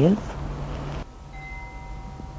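A soft steady hiss, then from about halfway a few faint, steady, chime-like ringing tones at several pitches.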